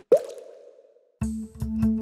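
A title sound effect: one sharp hit with a short ringing tail that fades out within a second. A bit over a second in, background music with a steady beat starts.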